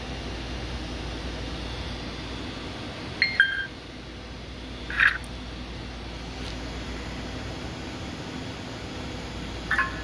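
Short electronic beeps from a FlySky Noble NB4 transmitter's touchscreen as menu icons are tapped, a little past three seconds in and again about five seconds in, over a steady low background hum.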